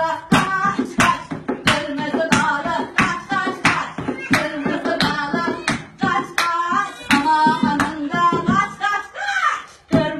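Women singing a children's song while clapping their hands in a steady rhythm, about three claps every two seconds.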